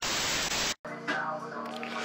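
A burst of TV-static hiss from a glitch transition effect, lasting under a second and cutting off sharply. Music then plays quietly.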